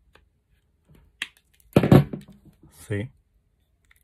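Side cutters snipping off the tail of a nylon cable tie on a plastic surface socket: a few light handling clicks, then one sharp click about a second in.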